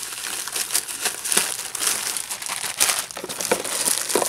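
Plastic packaging inside a figure box crinkling and crackling as a hand pulls at it, in a continuous run of sharp rustles.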